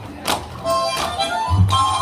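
Harmonica playing a stepping folk melody for a traditional dance. Deep drum beats come in near the end.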